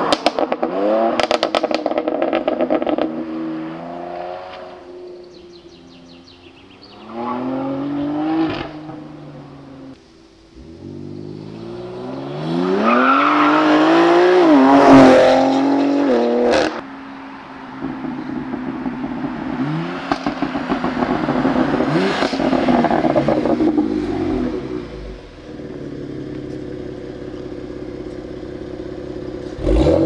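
Tuned BMW X3 M's twin-turbo S58 straight-six accelerating hard in several runs, its pitch climbing and dropping back at each gear change, with crackling from the exhaust near the start. It is loudest on a long rising pull about halfway through, which cuts off suddenly.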